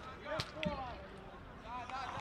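Football players shouting across the pitch, with two sharp knocks of the ball being struck about half a second in, a quarter of a second apart.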